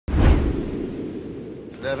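Whoosh sound effect of a television show's logo ident: a sudden sweep with a deep hit that dies away over about a second and a half. A voice begins right at the end.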